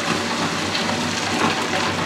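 Table-top wet grinder running, its stone roller turning in the steel drum and grinding green gram into dosa batter: a steady motor hum under a grainy rattle of the coarse gram.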